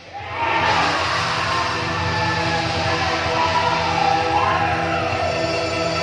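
Kentongan bamboo-percussion ensemble music. After a brief lull at the very start it comes back in as sustained tones with a gliding, wavering melody line on top, instead of the dense drumming heard just before.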